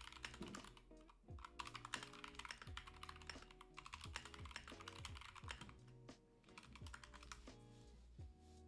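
Typing on a computer keyboard: a quick, uneven run of keystrokes, with a short lull about six seconds in. Quiet background music plays underneath.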